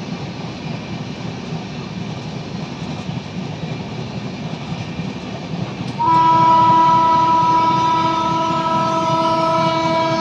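Rajdhani Express coach running along the track, a steady low rumble from the train. About six seconds in, a locomotive horn sounds one long blast at a steady pitch, louder than the running noise.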